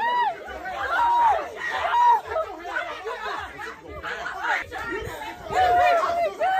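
Several people talking over one another at once, an excited jumble of overlapping voices.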